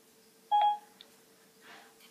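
Apple iPad's Siri chime: a single short electronic beep about half a second in, the tone that signals Siri has stopped listening and is processing the spoken request, followed by a faint click.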